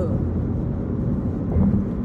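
Steady low rumble of road and engine noise inside a moving car's cabin at highway speed.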